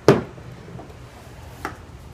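Tools being set down on a wooden door: a sharp knock just after the start, as the metal hole saw is put down, and a lighter knock near the end as the plastic door-lock boring jig is placed against the door edge.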